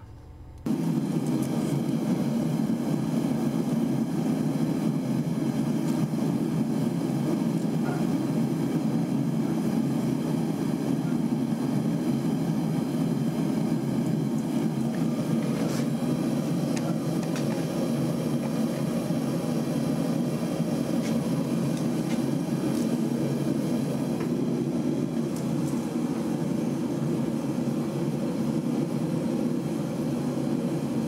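Steady whooshing noise of a machine or blower running. It starts abruptly about half a second in and holds even throughout, with no beat or rhythm.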